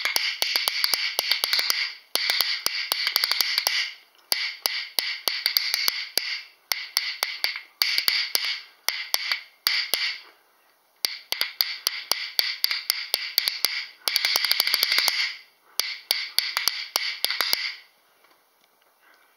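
A pair of unfinished bison rib rhythm bones held in one hand and clacked together, played in bursts of rapid clicking rolls, each a second or two long with short breaks between.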